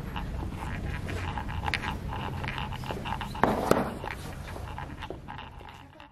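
Room noise with scattered light knocks and rustles, a louder rustling burst a little past three seconds, fading away toward the end.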